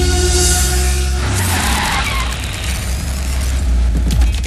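Electronic film background music with long held notes. About a second in, a loud rushing noise sweeps in over it and runs for a couple of seconds.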